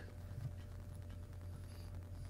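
A quiet gap in a recorded phone call: a low steady hum and faint hiss of the call's background noise, with no voices.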